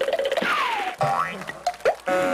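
Cartoon-style comic sound effects: a falling whistle-like glide in the first second, then short rising 'boing' glides about one second in and again near the end.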